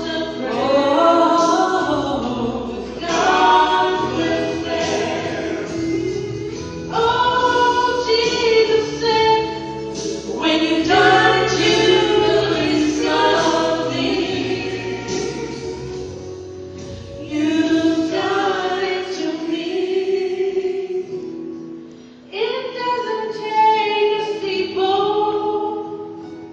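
A small vocal group singing a gospel song in harmony, in long sung phrases with short breaks between them, amplified through the church's sound system.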